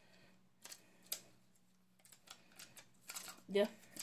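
A few light plastic clicks and ticks from an Elmer's refillable glue tape runner being handled and checked; its refill has run out.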